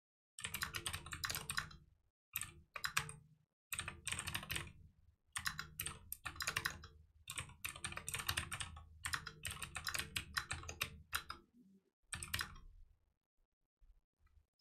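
Computer keyboard being typed on in quick runs of keystrokes, broken by short pauses, as code is entered.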